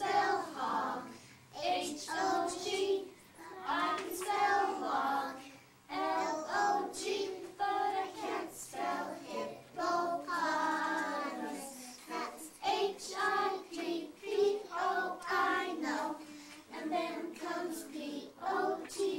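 A group of young children singing a song together in unison, in phrases with short pauses between.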